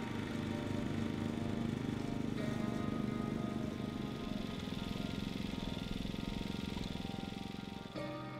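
Background music over a small engine running steadily with a fast even pulse, the motor of a field-line paint sprayer.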